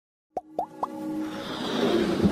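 Animated logo intro sting: three quick plops, each rising in pitch, about a quarter second apart, then a swelling musical build-up that grows louder.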